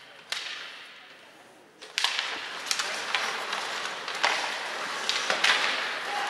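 Ice hockey skates scraping and carving on the ice, with sharp clacks of sticks and puck. This sets in about two seconds in, after a quieter stretch broken by a single knock.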